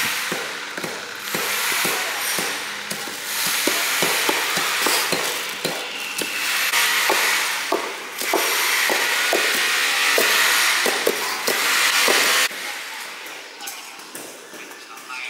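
Water running from a hose into a plastic-lined trench and over soil, a steady rushing hiss, with a run of sharp knocks through most of it. The sound drops off abruptly near the end.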